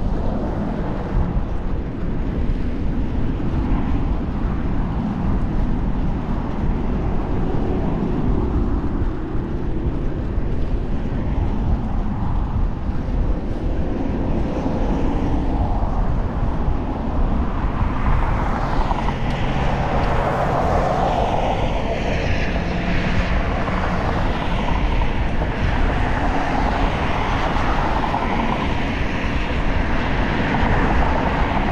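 Wind rushing on the microphone of a moving bicycle, mixed with steady traffic noise from the highway beside the path. The traffic noise swells louder past the middle.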